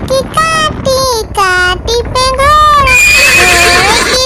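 Cartoon horse whinnies, several in quick succession with wavering pitch, the last one harsher and noisier, about three seconds in.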